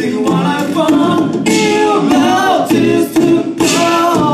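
Male a cappella group of five singing through handheld microphones, a melody over backing harmonies in the voices.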